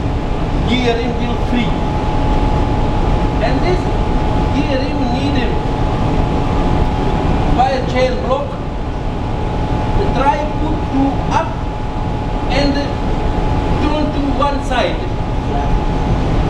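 Loud, steady drone of a ship's engine-room machinery, a deep rumble with a constant thin whine above it.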